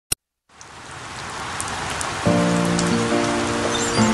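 Heavy rain fading in and growing louder, with a music intro of sustained notes entering a little over two seconds in.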